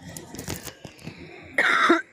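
A woman coughing into her fist: several short coughs, with a louder one near the end.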